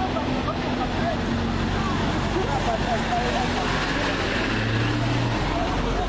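Motor vehicles running and passing at close range, a steady engine hum that sinks slightly in pitch, with a deeper engine note joining for a moment near the end. Faint voices of a crowd are heard behind the traffic.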